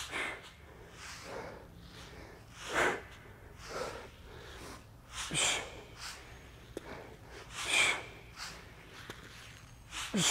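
A man's sharp, forceful exhalations, one with each rep of a core exercise, a couple of seconds apart. They are hissy breaths pushed out on the effort of each lift, and the loudest come about three, five and eight seconds in.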